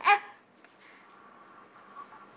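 A short vocal "ah" at the start, then quiet room tone with a faint steady high hum.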